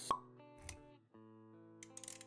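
Intro sound effects over soft plucked background music: a sharp pop right at the start, the loudest sound, then a low thud just over half a second in. The music briefly drops out about a second in, then resumes with a few quick clicks near the end.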